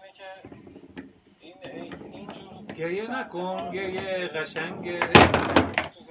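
A foosball table clatters loudly for well under a second near the end as its rods and figures are slammed. Before that, a voice talks in the background.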